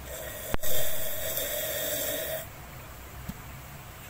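A sharp click, then a loud slurp of coffee drunk from a glass mug, lasting about two seconds.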